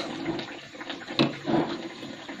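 Metal spoon stirring and beating thick batter in an aluminium pot: wet slapping and squelching, with a couple of sharper scrapes just past halfway.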